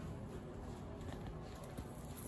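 Quiet room tone with a few faint soft taps of footsteps on carpet and handling noise from a moving camera.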